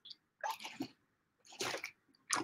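A person sipping through the spout of a large plastic water bottle and swallowing, in two short bouts about half a second and a second and a half in.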